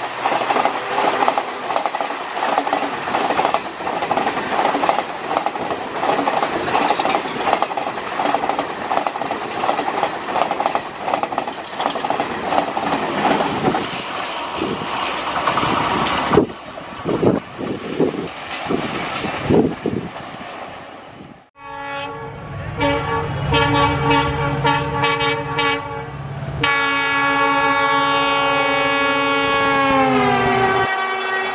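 Garib Rath Express coaches passing at speed, wheels rattling and clattering over the rail joints. After a cut, a diesel locomotive's multi-tone horn sounds in short broken blasts, then one long blast that drops in pitch as the locomotive passes.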